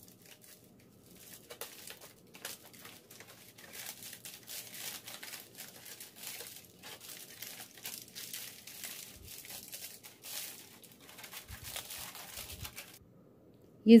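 Aluminium foil being peeled open and unwrapped by hand, crinkling irregularly; it stops about a second before the end.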